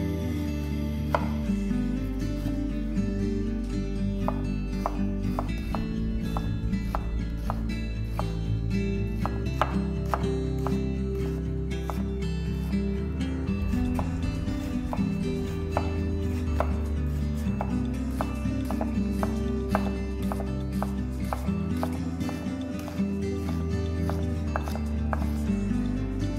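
Chef's knife slicing and chopping an onion on a wooden cutting board: irregular knife taps on the board, coming in quicker runs at times. Background music with held bass notes plays throughout.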